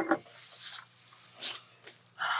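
Pen scratching on paper as a man signs and prints his name on a form, after a short "oh" at the start, over a steady low electrical hum.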